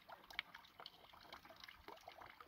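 Faint trickle of water running from a garden hose into a plastic bottle, with small irregular splashes and drips and one sharper splash under half a second in.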